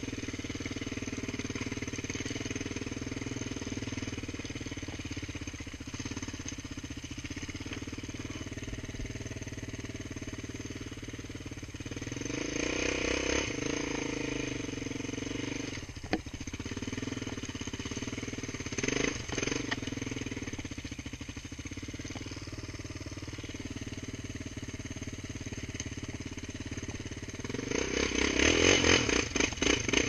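Small off-road vehicle engine running while under way, getting louder on the throttle about halfway through and again near the end. Two sharp knocks stand out in the middle.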